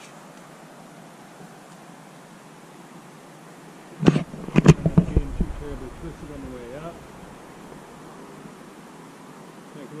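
Metal rings of a ring-and-ring friction saver knocking and clacking as the throw line pulls the small ring up over the branch and it flips over and drops, a quick cluster of sharp knocks about four seconds in.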